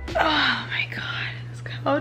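A woman's long breathy sigh, falling in pitch, over a steady low hum, with the start of her speech near the end.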